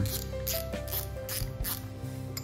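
Drag knob of a metal-bodied spinning reel being turned by hand to take off the spool, giving a run of light clicks at about three to four a second, over background music.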